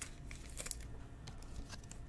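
Faint handling noise from trading cards: a few light scattered clicks and soft rustles over a low room hum.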